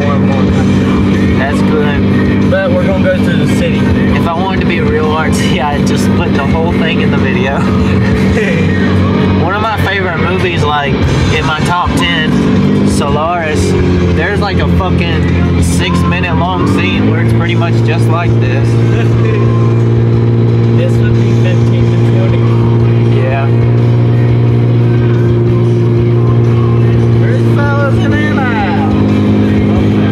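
A song with a singing voice, played loudly on a car stereo over the car's running and road noise; its low held notes change pitch a few times.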